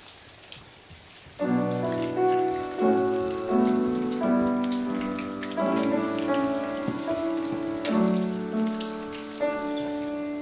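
Sustained, organ-like keyboard chords begin about a second and a half in, playing slow held notes as a hymn introduction. Under them runs a scatter of small crackling clicks throughout, typical of a congregation peeling open prepackaged plastic communion cups.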